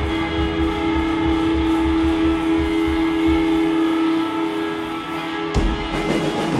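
Live psychedelic rock band with electric guitars holding one long sustained, droning note over a pulsing low end that fades away. About five and a half seconds in, the band comes back in with a sudden loud hit as the next song starts.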